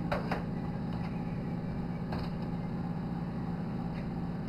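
Steady low hum of the circulated-air incubator's fan, with a few faint clicks of eggs being shifted in the plastic tray near the start and about two seconds in.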